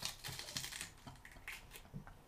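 Irregular crisp crunching clicks of someone biting and chewing a raw onion.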